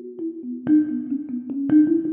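Sampled metal water bottle played as a virtual instrument with room reverb: a melody of struck, ringing metallic notes that overlap, somewhere between a steel drum and a celeste. Two notes are struck harder and brighter, about two-thirds of a second and 1.7 seconds in.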